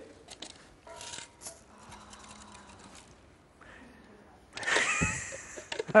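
Faint plastic clicks and handling sounds from a Hoover Handy Plus handheld vacuum as its dust bowl is taken off to be emptied. Near the end comes a brief, louder breathy burst with a thump.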